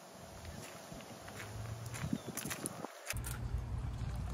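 Faint footsteps and a few light knocks. After an abrupt break about three seconds in, the sound turns louder and more rumbling.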